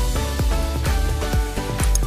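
Background music with a steady, bass-heavy beat, about two beats a second.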